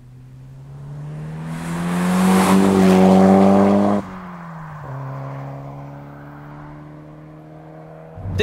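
Toyota Celica GT-Four ST205's turbocharged four-cylinder engine driving past under acceleration, its revs climbing and getting louder for about four seconds, then dropping abruptly. After that a quieter, steadier engine note fades as the car moves away.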